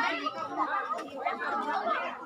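Several people talking at once: crowd chatter of overlapping voices.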